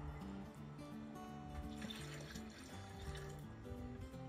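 Background music with held melodic notes, over the trickle of milk being poured from a measuring cup into a blender jar.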